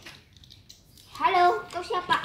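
A child's voice, starting about a second in after a short quiet stretch.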